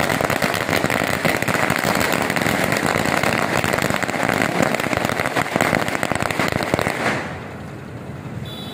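A long string of firecrackers going off, a fast, unbroken crackle of many bangs a second, stopping about seven seconds in.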